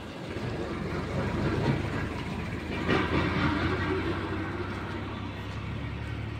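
A vehicle engine running steadily, a low hum under general road noise.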